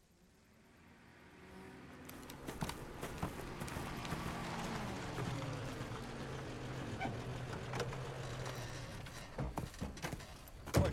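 A vintage 1930s sedan's engine grows louder as the car drives up, then drops in pitch as it slows to a stop. Sharp clicks and knocks come near the end as a car door is opened.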